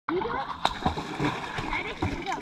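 Pool water splashing and sloshing close to a camera held at the water surface, with scattered small knocks, and a person's voice briefly near the start.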